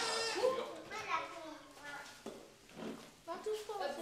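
Young children's voices laughing and calling out in short high-pitched bursts, about once a second.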